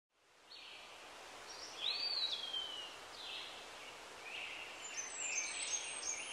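Birds calling: a series of high chirps and whistles, one rising and then sliding down about two seconds in, over a faint steady background hiss.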